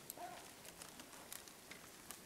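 Near silence: quiet room tone with a few faint ticks.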